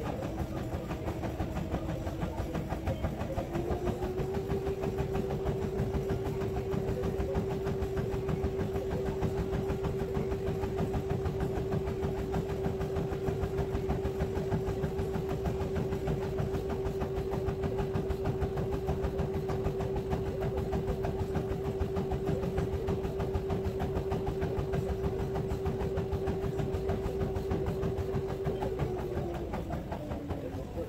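Treadmill running under a person's footfalls on the belt, its motor whine stepping up in pitch about four seconds in as the speed goes up. It then holds steady and drops again near the end as the belt slows.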